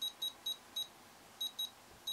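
Futaba T14SG radio transmitter giving short, high key beeps as its touch-sensor wheel is scrolled step by step through the menu lines. Four beeps come about a quarter second apart, then a short pause and two more.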